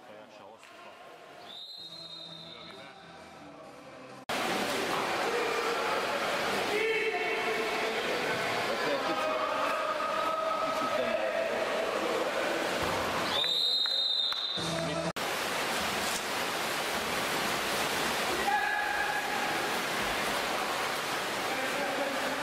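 Referee's whistle blown twice in short, high blasts, once near the start and once past halfway, in a pool hall full of crowd noise and voices. The hall noise jumps abruptly louder about four seconds in.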